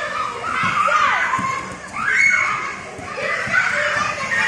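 Several children's high voices shouting and chattering over one another while they run about in a game.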